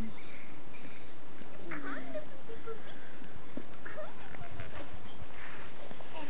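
A litter of young puppies whimpering with short, high squeaks, mixed with a person's soft voice cooing at them.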